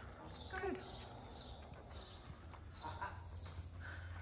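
A horse walking on deep arena sand: soft, evenly spaced hoof steps scuffing the sand, over a low steady rumble.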